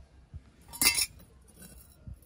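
Rusty steel knife blade scraping and clinking against a concrete floor as it is shoved about with a metal tool: a light click, then one loud scrape about a second in.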